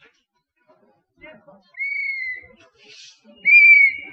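Two steady high whistled notes, each under a second long, the second louder than the first, with a short hiss between them and faint distant voices.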